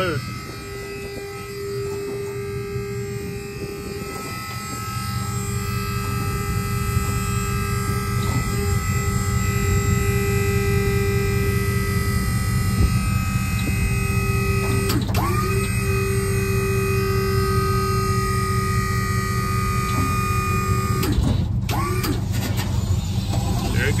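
A dump trailer's 12-volt electric hydraulic pump motor running steadily under a heavy load as it raises the bed, powered from a jump box because the trailer battery is dead. Its hum grows louder about five seconds in, then holds level.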